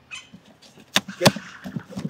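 Stapled cardboard bike box being pulled open by its top flap: scraping and rustling cardboard, with two sharp snaps close together about a second in. The staples are hard to pull free.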